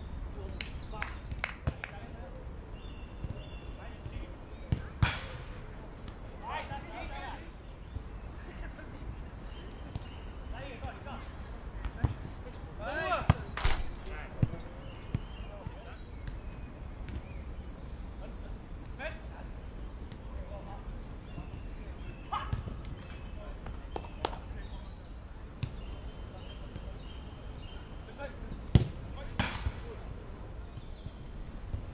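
A football being kicked on an artificial-turf pitch: about half a dozen sharp thuds at irregular intervals, with players' distant shouts in between. A steady low rumble runs underneath.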